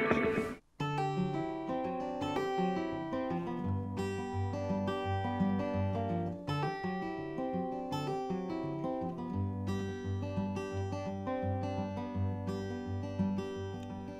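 Acoustic guitar playing a solo introduction, picking single notes over a repeating bass line; it starts just under a second in, after a brief silence.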